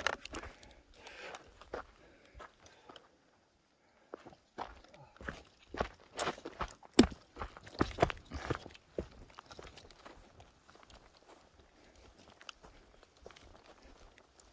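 Footsteps on grass and forest ground, uneven steps that pause briefly near the start, are loudest in the middle and grow fainter toward the end.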